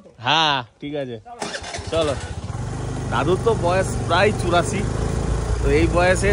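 A person's voice for about the first second, then, after a sudden change, a motorcycle engine running steadily while riding, with a man talking over it.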